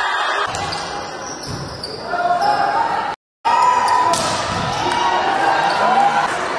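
Volleyball being struck during a rally in a sports hall, with players' voices calling, echoing in the hall. The sound drops out for a moment about three seconds in, where the footage cuts from one rally to another.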